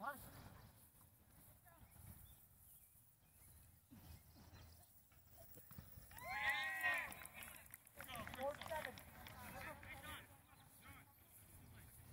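Players shouting on a field during a flag football play, with a loud cluster of high, rising-and-falling shouts about six seconds in and more calling a couple of seconds later.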